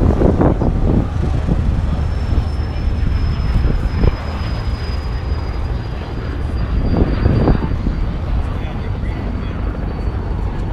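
A steady drone of aircraft engines, with a faint high whine slowly falling in pitch, under brief voices of people nearby. The parked B-17's propellers are still, so the drone is from other aircraft.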